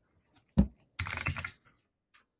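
Typing on a computer keyboard: a single heavier thump about half a second in, then a quick run of keystrokes about a second in.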